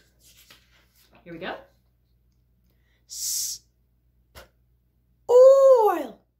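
A woman's voice sounding out a word one sound at a time: a short voiced sound, a drawn-out hissed 's', a brief click, then a loud long 'oi' that rises and falls in pitch near the end, as the word 'spoil' is blended.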